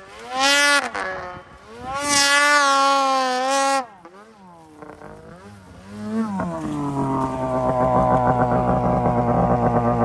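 Snowmobile engine revving hard in two high-pitched bursts, a short one near the start and a longer one about two seconds in, then winding down as the throttle is let off. From about six and a half seconds it runs steadily at a lower pitch, growing louder as the sled pulls up close.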